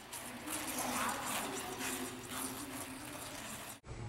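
Figure skate blades scraping on rink ice during a one-foot spin, faint over hollow rink background noise with distant voices. It cuts off suddenly near the end.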